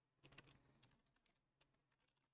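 Faint typing on a computer keyboard: a quick run of key clicks about a quarter second in, then scattered single keystrokes.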